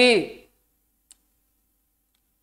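A man's voice finishing a spoken word, then near silence broken by a single faint click about a second in.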